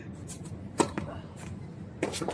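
A tennis serve: a racket hits the ball in one sharp, loud pop about a second in. Fainter pops and clicks follow from the far end of the court.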